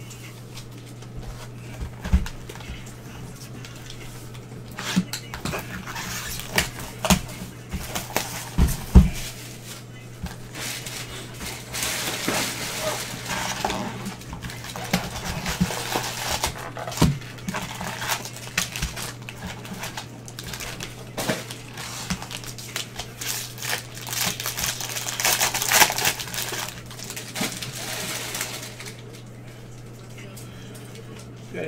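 Foil wrappers of 2020 Bowman Draft baseball card packs crinkling and tearing as a cardboard box is opened and the cards handled, with sharp knocks in the first several seconds and two longer spells of crinkling about halfway and near the end. A steady low hum runs underneath.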